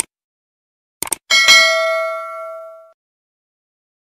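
Subscribe-button animation sound effect: two quick mouse clicks about a second in, then a bell ding that rings out and fades over about a second and a half.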